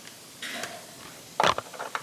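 Camera handling noise as the camera is mounted on a tripod: soft fumbling sounds, then a single sharp clunk about one and a half seconds in.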